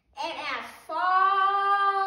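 A young girl's voice reciting: a short spoken phrase, then from about a second in one word drawn out into a long, steady, sung-like held note.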